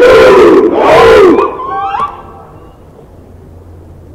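Crowd cheering and screaming, with shrill whooping calls that slide up and down in pitch. It is loud for about the first second and a half, then dies down to a low murmur.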